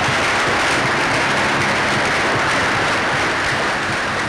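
Banquet audience applauding, a dense steady clapping that begins to die away near the end.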